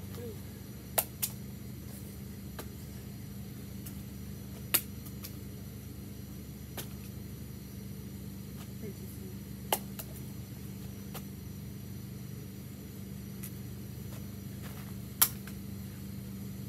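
Sharp taps or clicks, about five of them spread a few seconds apart, the last near the end the loudest, over a steady low hum.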